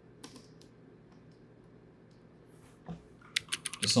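Computer keyboard keys clicking: a couple of light taps soon after the start, then a quick run of about eight keystrokes in the last second as shortcut keys are pressed, the loudest at the end.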